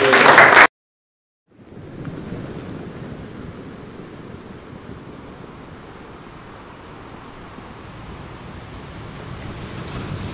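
A man's speech cuts off abruptly, and after a moment of dead silence a steady wash of sea surf fades in and swells slightly near the end.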